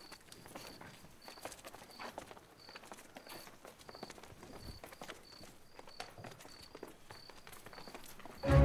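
Faint, irregular footsteps of several people walking on a hard floor, with a steady high chirp repeating about twice a second, like a cricket in night ambience.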